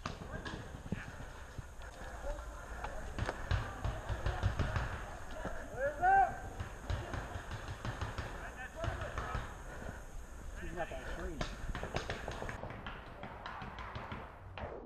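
Distant, indistinct voices of other paintball players calling out, clearest about six seconds in, with scattered sharp knocks and low thumps.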